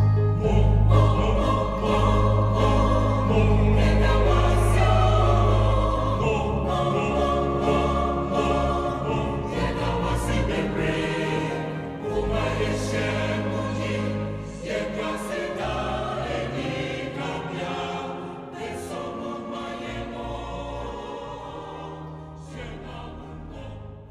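A mixed choir singing a Twi gospel song with electronic keyboard accompaniment; the music gradually fades out toward the end.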